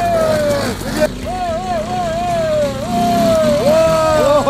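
Off-road dirt bike engine revving up and down under changing throttle on a steep climb, its pitch rising and falling, with an abrupt cut about a second in.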